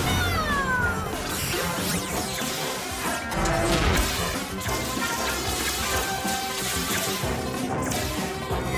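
Cartoon soundtrack of action music with sound effects. A crash comes at the very start, followed by falling whistling glides, and busy effects run on under the music.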